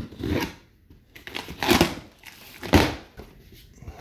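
Knife slitting the packing tape on a cardboard box and the flaps being pulled open: short rasping, tearing bursts, the two loudest about a second apart near the middle.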